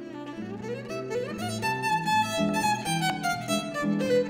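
Violin playing a melody with sliding notes over a harp's low plucked accompaniment, the music growing louder.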